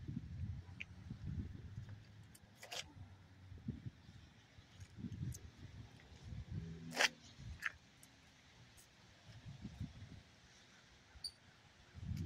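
Faint, uneven low rumble of a handheld camera microphone being moved about, with one sharp click about seven seconds in and a few fainter ticks.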